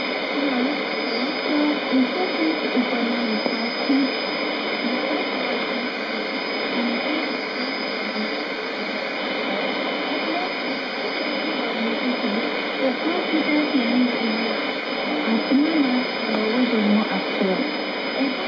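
Trans World Radio shortwave broadcast on 11635 kHz heard through a communications receiver: a voice sunk in steady hiss and static, with a thin steady high whistle.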